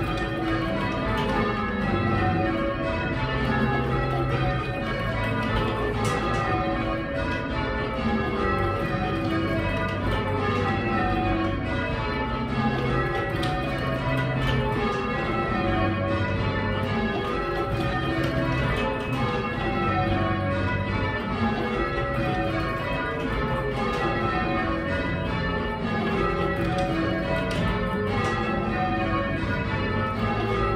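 A ring of eight church bells in full-circle change ringing, the bells striking one after another in repeated descending runs, heard from the ringing chamber below the bells.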